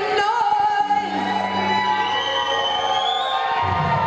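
Live rock band playing, with a woman singing held notes over sustained guitar and bass; a slow rising pitch glide runs through the middle.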